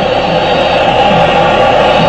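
Loud, steady din of a large football stadium crowd.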